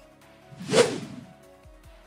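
A single whoosh transition sound effect, swelling to a peak just under a second in and then fading away. It marks the cut to the next segment.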